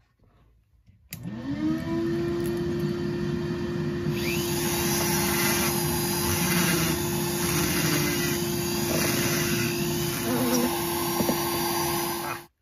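Flex-shaft rotary tool spinning up about a second in and running at a steady tone. From about four seconds in, a Kutzall carbide burr grinds into a cottonwood block, hollowing it out.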